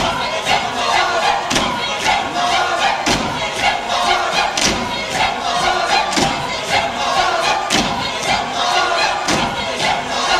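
A large youth choir singing loudly, with a regular thump about every second and a half.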